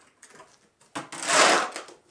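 A shovel scraping manure along a barn floor: a few light knocks, then one loud scrape about a second in.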